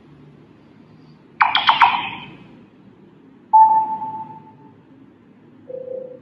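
Sony Xperia M loudspeaker previewing three different short notification sounds in turn. About a second and a half in comes a quick cluster of bright high chimes that dies away. At about three and a half seconds a single mid-pitched tone fades out, and near the end a brief lower tone sounds.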